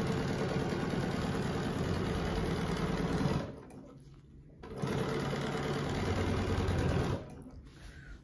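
Domestic sewing machine running at a steady speed in two runs, with a pause of about a second in the middle, and stopping shortly before the end. This is free-motion ruler quilting: one full clamshell is stitched, then, after the hands are repositioned, a half clamshell.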